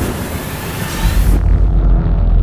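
Cinematic intro sound effect for a fireball burst: a loud fiery hiss that cuts off suddenly about one and a half seconds in, as a deep bass rumble swells and dark, low music begins under it.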